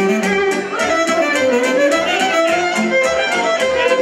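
Live band playing a fast Maramureș folk dance tune, led by violin over a quick steady beat.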